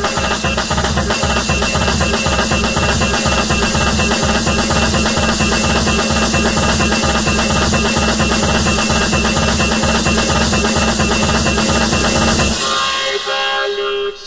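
Electronic dance music with a dense, steady beat and heavy bass. Near the end the bass and drums cut out suddenly, leaving a thinner, fading high part as a sparser passage begins.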